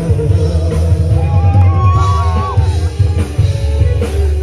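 Loud live concert music over a PA system, with a heavy bass beat and a voice singing a held melody through the middle.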